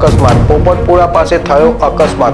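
Loud dramatic news background music with deep booming drum hits and a voice running over it.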